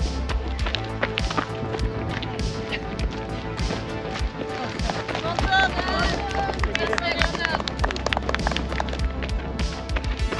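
Background music with a steady beat over held low notes. People's voices call out briefly in the middle.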